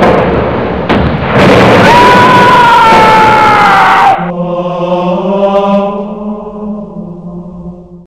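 Two loud explosion blasts, the second with a high tone sliding slowly down over it. About four seconds in they cut off, and a sustained choir-like chord takes over and slowly fades.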